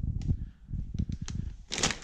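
Plastic wrapping crinkling and crackling in scattered short clicks as a bagged cold air intake tube is handled over a cardboard box of packed parts.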